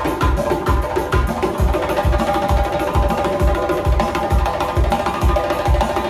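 Doiras, Central Asian frame drums, beaten by hand in a steady driving rhythm, with deep strokes between two and three a second, over sustained tones of other music.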